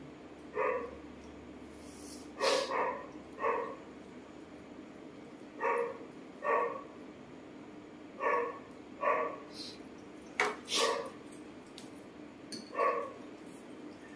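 A dog barking on and off, about ten short barks at irregular intervals, some in quick pairs.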